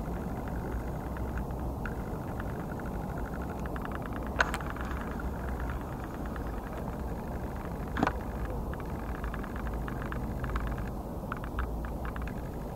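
Steady low outdoor rumble and hiss, with two sharp clicks about four and eight seconds in.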